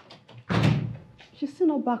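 A door shut with a single loud thud about half a second in, dying away over about half a second.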